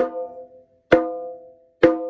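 Conga played with relaxed open slaps: three hand strikes about a second apart, each with a sharp attack and a clear, high ringing tone.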